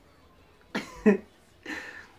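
A man's stifled laugh behind his hand: three short, breathy bursts in quick succession starting just under a second in.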